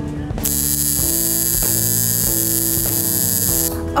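Electric tattoo machine buzzing steadily as it works on skin, with background music under it. A bright high hiss joins the buzz just after the start and drops away shortly before the end.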